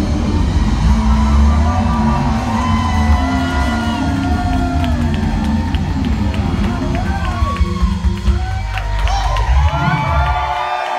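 Live rock band with electric guitars, bass and drums playing loud, with a crowd cheering and whooping over the music, more so in the second half.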